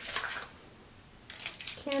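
Aluminium foil crinkling as a sheet is handled and laid flat on a cutting mat, in short rustles near the start and again from about a second and a half in.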